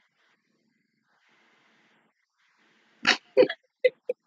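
Near silence for about three seconds, then a woman bursts out laughing: two loud bursts followed by short rhythmic laughs, about four a second.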